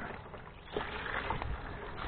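Water pouring steadily from a pipe outlet into a plastic tub, pumped by a small 12 V DC gear-motor-driven diaphragm pump that is running.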